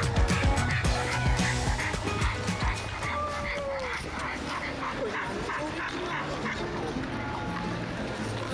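A dog barking and yipping over background music.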